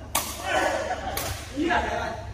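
A badminton racket strikes the shuttlecock with a sharp crack just after the start, and further rally sounds follow.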